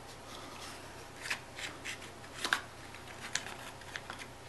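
Hands handling a small cardboard box and lifting it off a stack of stone whiskey cubes: a few light scrapes and taps of card and stone.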